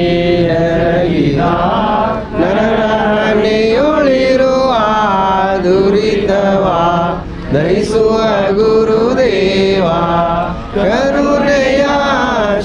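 Devotional aarti hymn to Dattatreya, a sung melody with long, wavering held notes over a steady low drone.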